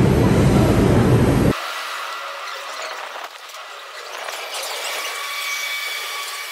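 New York City subway train in the station: a loud, deep rumble for about the first second and a half. Then an abrupt cut to a quieter hiss of the train at the platform, with faint steady high-pitched whines from about four seconds in.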